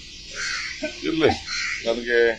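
A bird cawing twice, short harsh calls about a second in and near the end, over faint background voices.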